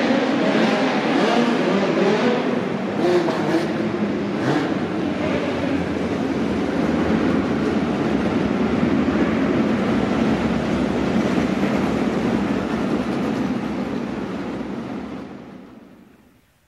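Several midget race car engines running hard together on a dirt oval, their pitches wavering as the cars go through the turns; the sound fades out near the end.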